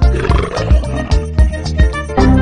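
Tiger roar sound effect over background music with a steady beat; the roar comes in the first second.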